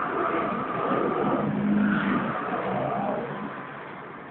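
Small 48cc two-stroke engine of a mini ATV running and revving as the quad is driven and turned, falling away near the end.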